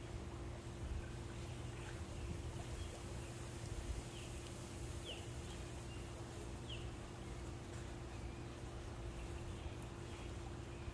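Steady low hum of the pool's circulation system drawing water through the skimmer, with a constant faint tone. Three short, faint bird chirps about four, five and nearly seven seconds in.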